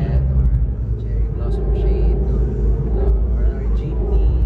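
A man talking, not clearly, over a loud, steady deep rumble.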